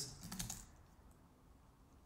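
A few keystrokes on a computer keyboard in the first half second, as the word "var" is typed into a code editor.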